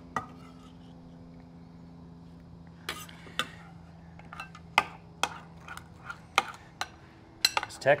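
Metal spoon clinking and scraping against a glass mixing bowl as a thick mayonnaise-based dressing is stirred. It is quiet for the first few seconds, then scattered clinks come from about three seconds in and grow more frequent near the end.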